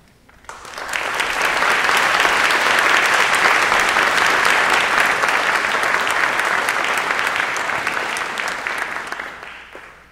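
Audience applauding. The clapping starts about half a second in, holds steady, and dies away near the end.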